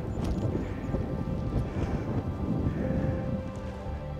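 Background music with steady held tones, over an uneven low rumble of wind buffeting the microphone.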